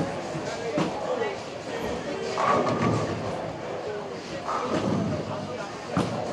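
Bowling alley ambience: people talking in the background, with a few knocks and thuds, at about a second in and twice more later.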